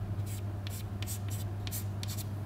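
Chalk writing on a blackboard: about seven short, quick scratchy strokes as small arrow marks are drawn. A steady low electrical hum runs underneath.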